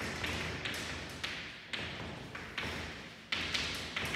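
Chalk writing on a chalkboard: a run of sharp taps, about two a second, each followed by a short scratchy stroke as the letters are chalked.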